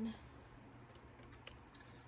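Faint, sparse clicks and light knocks of plastic body mist bottles bumping against each other as they are sorted by hand in a storage bin.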